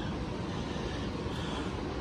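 Steady background noise, strongest at the low end, with nothing standing out from it.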